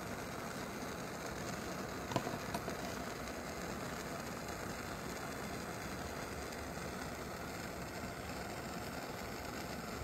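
A steady, even mechanical hum with a faint tap about two seconds in.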